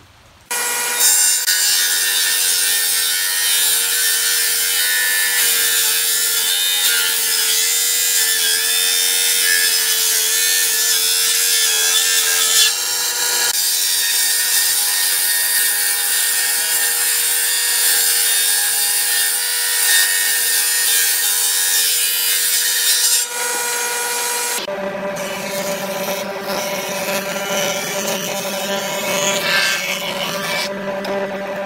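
Hitachi jointer-planer running, its cutterhead shaving timber fed across it: a loud, steady hiss of cutting over a steady motor whine, starting about half a second in. The sound changes abruptly a couple of times, and the whine sits lower and fuller in the last five seconds.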